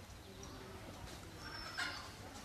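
A domestic fowl calls briefly near the end, over faint outdoor background with thin, high chirps from small birds.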